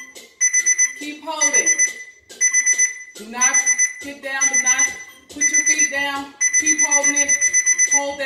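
Workout timer alarm going off to mark the end of the exercise interval. It gives a high electronic beep about once a second, each beep a quick run of pips, and near the end the beeps run together into one longer beep.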